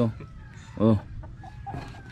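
A man's brief "oh" a little before a second in, over faint background clucking of a chicken.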